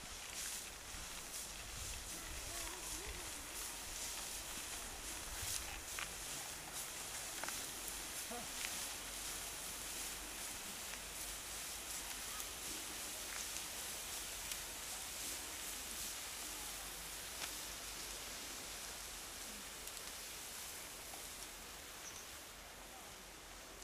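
Steady outdoor ambience at a rural threshing floor: an even high hiss with a low rumble beneath, faint voices and a few small clicks.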